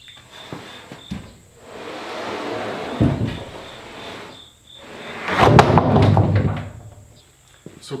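A freshly sawn beech board sliding and scraping across the log on a sawmill bed, with a knock about three seconds in. The loudest scraping and knocking comes between about five and six and a half seconds in.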